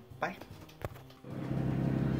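A single sharp click, then a steady low hum with a faint rushing noise that starts about one and a half seconds in.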